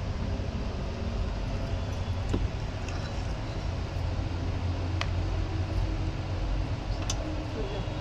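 Steady low background rumble with a few faint, sharp clicks.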